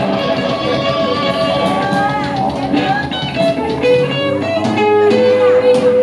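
Live rock band playing, with an electric guitar lead of bent notes over drums and cymbals, settling into a long held note near the end.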